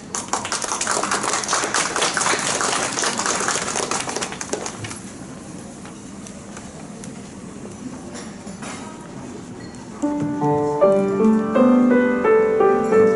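Audience applause for about five seconds, fading into a few seconds of quiet room tone. About ten seconds in, a Cristofori grand piano starts playing.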